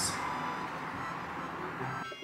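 Steady background room noise: an even hum and hiss with a faint held tone.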